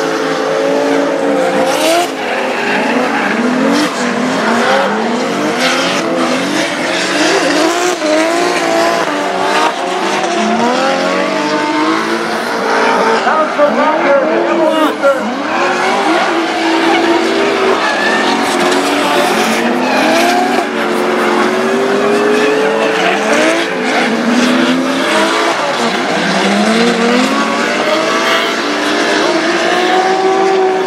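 Drift cars' engines revving up and down hard, with tyres squealing and skidding as two cars slide sideways in tandem through a corner in clouds of tyre smoke.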